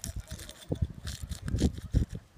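Scattered soft clicks and rustles as fingers push small rubber stoppers down into an open aluminium capsule tube.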